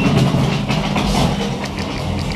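Hitachi URBANEACE machine-room-less traction elevator answering a car call, its doors and drive making a clattering rumble over a steady low hum as the car gets ready to go up.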